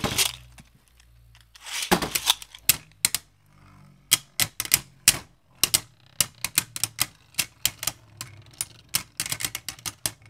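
Two Beyblade spinning tops in a plastic stadium, clashing again and again: a fast, irregular run of sharp plastic clacks, several a second, over a faint low whir of the spinning tops. A brief rasp about two seconds in comes before the clashing.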